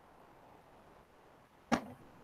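Near silence on a video-call audio line, broken near the end by one short, sharp noise that dies away quickly.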